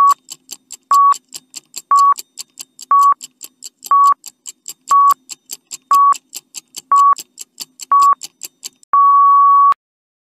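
Countdown timer sound effect: a short beep once a second with quick ticks between, about four ticks a second, ending in one longer beep at the same pitch as the count reaches zero.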